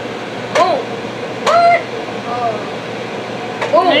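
Three short vocal sounds from a child, each of the first two starting with a sharp click like a 'p', over a steady humming fan with a low tone.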